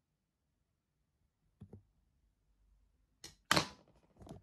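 Handling noises from tweezers and tissue paper at a tarantula enclosure: a couple of soft knocks about a second and a half in, then a click and a short, sharp rustle near the end.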